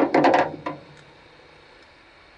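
A hand tool set down into an old kitchen-cabinet drawer, clattering in a quick run of sharp knocks for about half a second, followed by one more knock and a faint tick.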